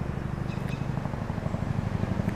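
Low, steady pulsing rumble of a motor vehicle engine running, with a few faint bird chirps about half a second in.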